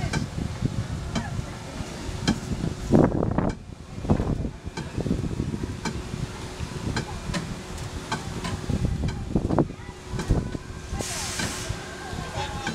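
Small kiddie roller coaster train running along its steel track: a steady rumble with a regular clicking of the wheels over the rail joints, and children's voices calling out a couple of times. A short hiss comes near the end as the train reaches the station.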